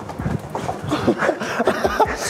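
A man's short, broken wordless vocal sounds, with small clicks in between.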